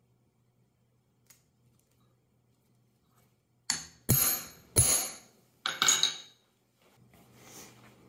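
Cobbler's hammer striking a steel hand setter about five times in quick succession, with a sharp metallic ring, setting a belt snap's cap onto its socket on a granite countertop. Brief handling of the leather follows.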